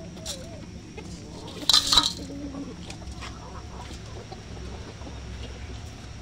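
Hens clucking while feeding on grain, with scattered sharp taps of beaks pecking. A short loud burst about two seconds in.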